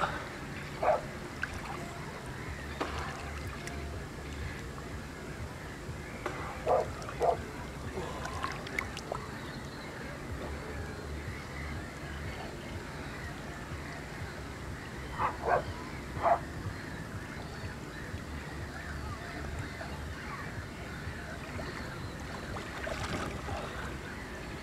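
Small waves lapping against shore stones under a low steady hum. Short animal calls come in twos and threes about a second in, around seven seconds in and again around fifteen to sixteen seconds in.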